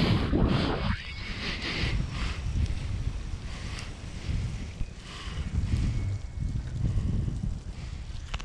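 Wind buffeting an action camera's microphone in uneven gusts of low rumble while the rider is towed over open water. A brief hiss sits over it during the first second.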